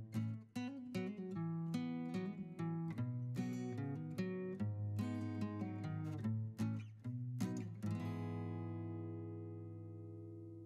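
Background music on acoustic guitar: a run of plucked and strummed notes, ending about eight seconds in on a chord that rings on and slowly fades.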